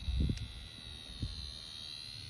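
A few short, soft noises from a dog's mouth as it holds something in its jaws, over a steady faint high-pitched drone.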